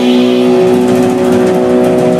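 Live band holding one sustained electric guitar chord that rings steadily through the amplifier, with no drum hits in it.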